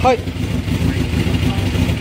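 Kawasaki Zephyr 1100's air-cooled inline-four engine idling steadily with an even low rumble.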